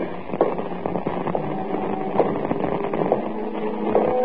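Crackle and a steady low hum from an old radio-broadcast transcription recording, with scattered faint ticks.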